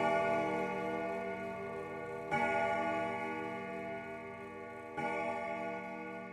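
A bell rings out, struck again twice about two and a half seconds apart, each strike a rich, many-toned ring that fades slowly.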